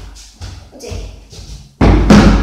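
A plastic chair knocking lightly as it is carried over a wooden floor, then set down with a sudden loud thud near the end.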